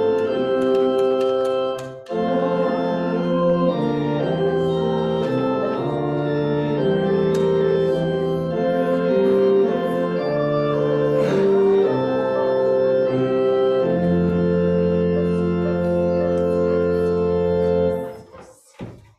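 Church organ playing a hymn-like piece in slow, sustained chords, with a brief break about two seconds in. It ends on one long held chord with a deep pedal note over the last few seconds, which then stops.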